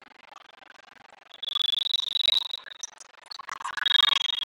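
Volleyball referee's whistle: a long trilled blast starts about a second and a half in, and another begins near the end.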